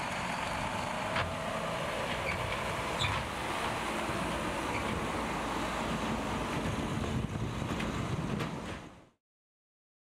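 Volvo tipper lorry's diesel engine running as it drives slowly past, with steady road noise; the sound fades out and goes silent near the end.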